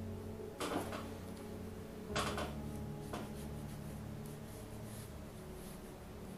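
Soft background music, with two short scratchy rustles of a brush and hand moving across the paper, about half a second in and about two seconds in, and a fainter one at about three seconds.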